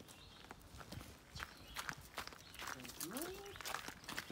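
Footsteps on the ground, heard as a run of light, irregular clicks and scuffs, with one short murmured voice sound near the end.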